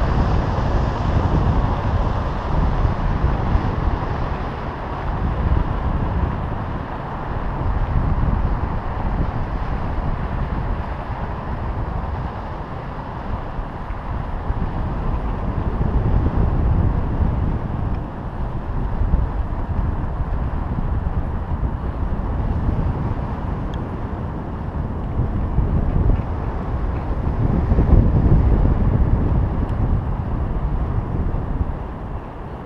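Wind buffeting the microphone of a camera on a climbing balloon payload: a continuous low rushing rumble that swells and eases every few seconds.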